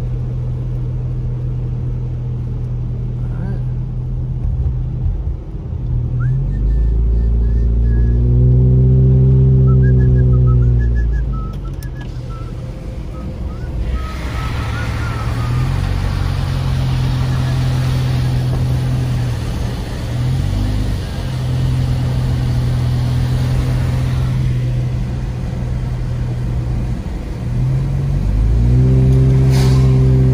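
Car engine and tyre noise heard inside the cabin while driving on a wet road, the engine note rising and falling with speed. For about ten seconds in the middle, a louder rush of wind and road noise comes in through the open side window.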